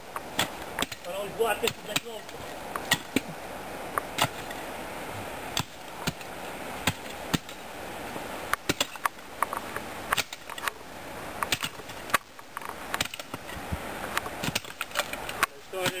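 A long-handled hand digging tool striking into soil and roots again and again, in irregular sharp hits with short pauses between.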